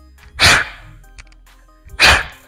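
Sharp, hissing exhales of a boxer throwing left hooks: one about half a second in and another right at the end, each a short burst of breath that fades quickly. Faint background music runs underneath.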